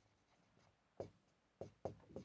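Marker pen writing on a whiteboard: faint, a few short strokes in the second half, the first second nearly silent.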